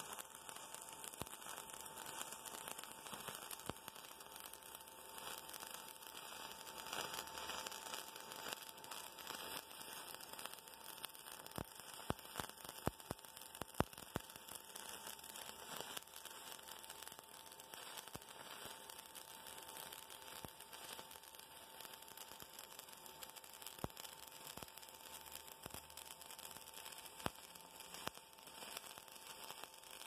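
Shielded metal arc (stick) welding on thin-gauge steel: the electrode's arc keeps up a steady crackle broken by scattered sharp pops.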